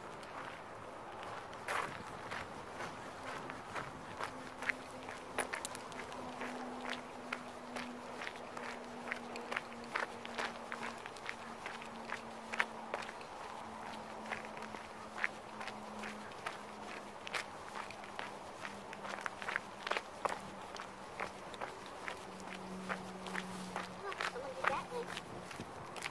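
Footsteps on a gravel road at a steady walking pace, about two steps a second. Behind them runs a faint steady low hum that slowly drops in pitch.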